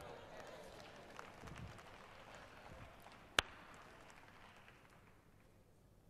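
A pause in speech: faint room noise that dies away, broken by a single sharp click about three and a half seconds in.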